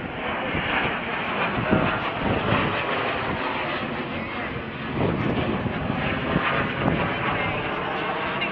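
The engine of a display aircraft flying overhead, a steady drone.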